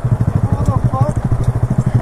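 Honda Grom's small single-cylinder four-stroke engine idling steadily close to the microphone, with a rapid, even beat of firing pulses.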